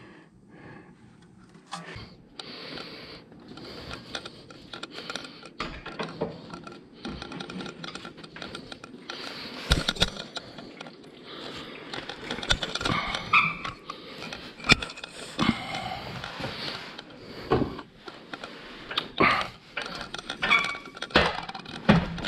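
Irregular metallic clinks, knocks and rustling of hands and tools working on a car's underside, with a few brief squeaks about twelve to fourteen seconds in.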